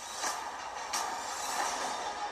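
Film trailer soundtrack: music mixed with a steady rushing, engine-like rumble of sci-fi sound effects, with two short sharp hits, the second about a second in.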